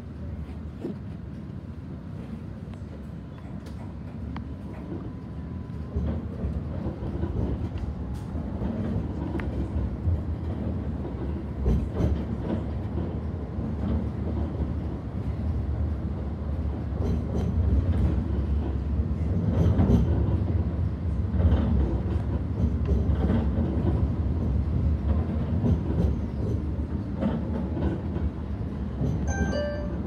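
Cabin noise of an Alstom Citadis X05 light rail tram under way, heard from inside: a steady low rumble of wheels on rail with a few sharp knocks. It grows louder about two-thirds of the way through, then eases a little.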